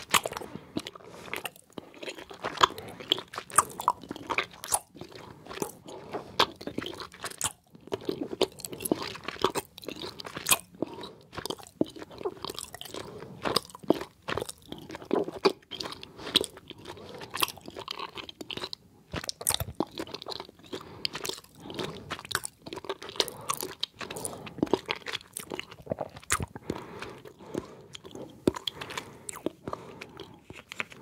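Close-miked chewing of soft gummy candies: a steady run of sticky smacking mouth sounds made of many short, irregular clicks.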